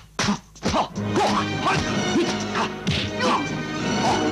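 Dubbed kung fu fight sound effects: several sharp punch-and-block smacks in quick succession, then music starts about a second in and more hits land over it.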